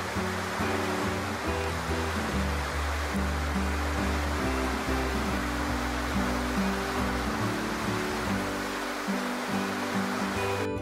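Steady rushing of whitewater pouring over a river standing wave, under background music of low held notes that change about once a second.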